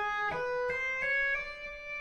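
Electric guitar played legato without picking: a few notes stepping upward, then a slide up into a held note that rings and fades.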